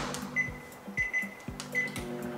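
Microwave oven keypad beeping three short times while a one-minute cook time is set, over the oven's steady low hum. Background music plays under it.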